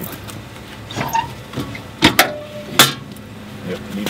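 Steel firebox door and latch of a Portage & Main outdoor wood boiler being worked open, with two sharp metal clanks, about two seconds in and near three seconds; the first leaves a brief ring.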